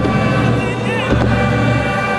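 Full high school marching band playing: sustained brass and woodwind chords over heavy low drums, with several sharp percussion hits.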